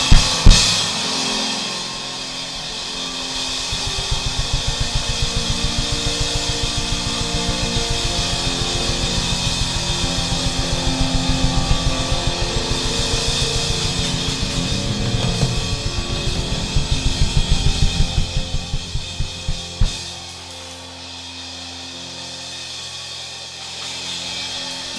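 Congregation cheering and applauding while the church band's drummer plays a fast, steady beat on the kick drum and kit. The beat grows louder, then stops about twenty seconds in, leaving the applause and cheers.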